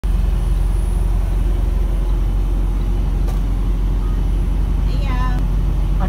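Steady low rumble of a tractor-trailer's diesel engine and road noise, heard from inside the cab while cruising at highway speed. A voice is heard briefly near the end.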